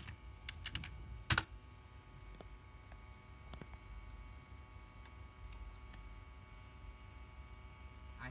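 Key presses on a computer keyboard: a quick run of several keystrokes in the first second and a half, ending in one louder press, then only a few faint clicks.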